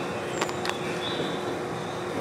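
Steady background noise of a large hall, with two faint clicks about half a second in and a brief high-pitched tone a moment later.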